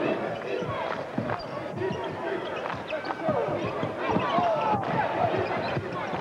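Basketball bouncing on a hardwood court during live play, a run of short thuds amid crowd and players' voices in an arena.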